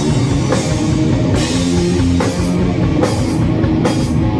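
Live doom/stoner rock band playing instrumentally: an electric guitar riff of sustained low notes over a drum kit, with cymbal crashes a little under once a second.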